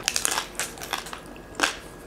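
Close-up chewing of crispy roast pig (lechon), a run of sharp crunches and crackles in the first half second, then sparser ones, with a louder crunch near the end.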